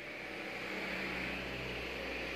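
Steady low hum with an even hiss of background noise, with no distinct clicks or handling sounds.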